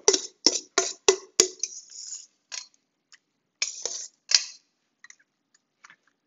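Metal tongs clicking and scraping against a stainless steel mixing bowl as salad is lifted out onto plates. A quick run of sharp clicks in the first second and a half, then a softer scrape and a few scattered clicks that thin out near the end.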